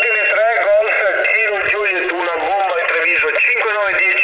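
Another amateur radio station's operator talking over the air, heard through a portable transceiver's loudspeaker: a thin, narrow-sounding voice with no deep tones, received very strong.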